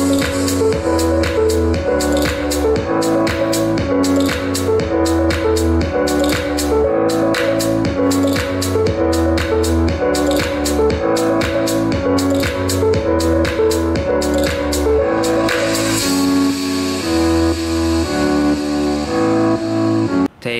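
Electronic music with a steady beat and strong bass playing through a Harman Kardon Invoke smart speaker, sounding bright and detailed with firm bass. The bass drops out briefly about fifteen seconds in, then the track comes back fuller.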